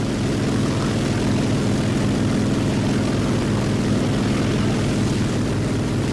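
Piston-engined propeller fighter plane in flight: a steady engine drone with a fast, even pulsing in the low end.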